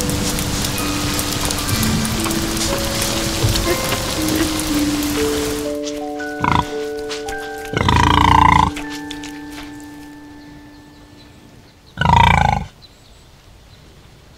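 Slow music of long held notes over a steady hiss of rain, fading out by about ten seconds in. A pig makes a short sound about six and a half seconds in, then two loud, longer calls near eight and twelve seconds in.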